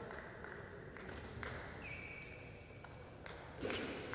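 Table tennis rally: the plastic ball clicking sharply off the rackets and table a handful of times, with a high squeak held for about a second in the middle.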